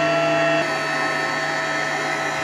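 Electric centrifugal juicer running under load on watermelon, a steady motor whine with several fixed tones. The level and tone step down slightly about half a second in.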